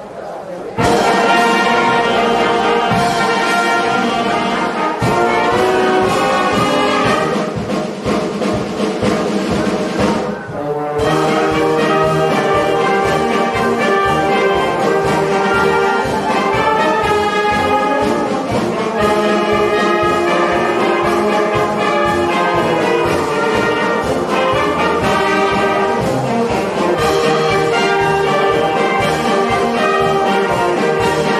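A fire brigade brass band playing a march with a steady drum beat. The full band comes in together about a second in and plays on loudly, with a brief drop around ten seconds in.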